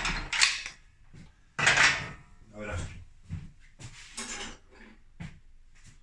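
Metal tools and parts being handled on a workbench: a string of clanks, knocks and scrapes, loudest at the start and about two seconds in, with lighter ones after.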